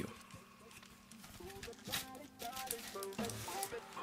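Faint handling sounds of a cardboard pen box being slid open and a plastic-wrapped stylus pulled out: scattered soft clicks and rustles, starting about a second in, over faint background music.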